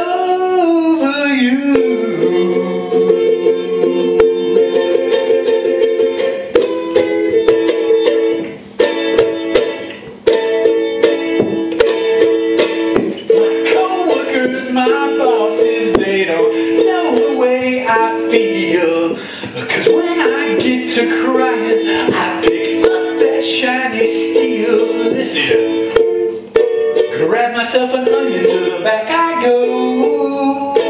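Ukulele strummed in a steady, even rhythm of chords: an instrumental break in a live solo song.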